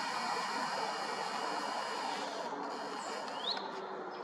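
Steady background noise of a city street with distant traffic, and a single short rising bird chirp about three and a half seconds in.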